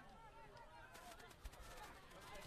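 Near silence: faint distant voices calling out on the field.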